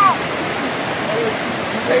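Small waterfall pouring over rocks into a shallow stream: a loud, steady rush of falling and tumbling water. A long held shout cuts off just as it begins.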